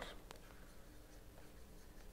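Faint stylus writing on a pen tablet, with a couple of soft ticks over near-silent room tone.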